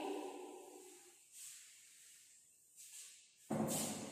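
A cloth wiping a chalkboard: three short brushing swishes, the last, about three and a half seconds in, the loudest and fullest.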